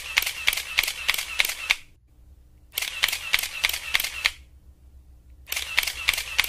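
DSLR camera shutter firing in continuous bursts, about four clicks a second: three runs, each one to two seconds long, with short pauses between them.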